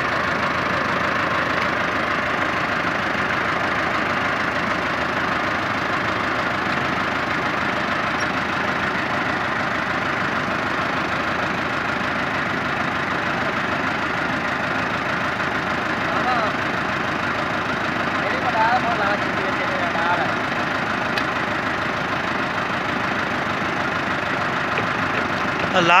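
Massey Ferguson 385 tractor's diesel engine idling steadily.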